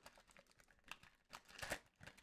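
Faint crinkling of a foil trading-card pack wrapper being torn open by gloved hands, a few soft crackles about a second in and again near the end.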